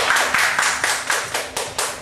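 A small group of people clapping their hands, a quick run of claps lasting the whole two seconds.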